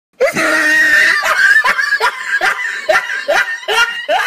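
A person's voice: a loud held shriek, then rhythmic bursts of laughter, about two a second.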